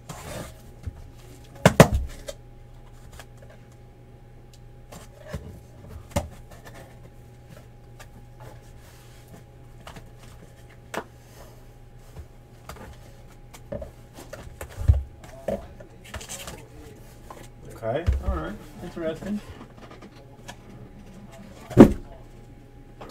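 A box cutter slitting the packing tape on a cardboard shipping case, then the cardboard flaps being opened and boxes handled inside, with scattered knocks and rustles. The loudest thumps come about two seconds in and at the very end, as boxes are set down on the table.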